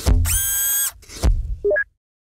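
Electronic sound effects for an animated logo. A sharp hit and a bright, buzzy tone held for almost a second, a second hit about a second and a quarter in, then quick blips rising in pitch before it cuts off.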